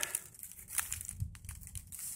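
Faint, scattered crackling and rustling as fingers rub and crumble a pinch of damp, clayey subsoil taken from a soil-probe core, close to the microphone.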